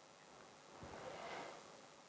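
Near silence: room tone, with a faint soft sound about a second in.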